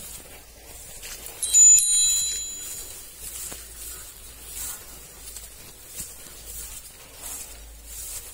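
A brief, bright metallic chime, several clear high tones ringing together, about a second and a half in and dying away within about a second. Faint rustling lies underneath, with a high hiss that swells roughly once a second.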